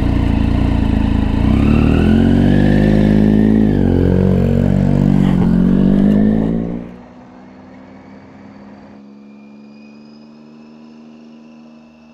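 Motorcycle engine loud and close, revving and accelerating away from a standstill, its pitch climbing and shifting for about seven seconds. The sound then drops suddenly to a much quieter, steady engine hum.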